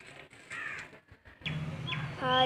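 A brief harsh bird call about half a second in, followed by a few faint handling clicks. A low steady hum comes in near the end.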